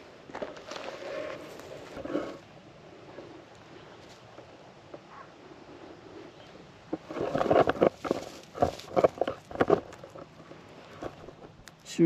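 Dry straw mulch and hay crunching and rustling under handling and footsteps, loudest in a run of sharp crackles from about seven to ten seconds in.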